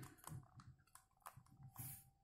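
Faint plastic clicks of a 3x3 Rubik's cube's layers being turned by hand, a scattered string of short clicks.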